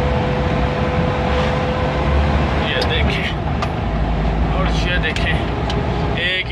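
Ambulance driving, heard from inside the cab: steady engine and road rumble, with a whine that drops in pitch a little over two seconds in.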